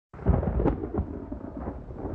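A loud, deep rumble with irregular crackles that starts abruptly, strongest in the first second and then settling to a steady rolling rumble.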